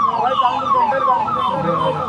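A siren sounding in quick repeated falling sweeps, about four a second.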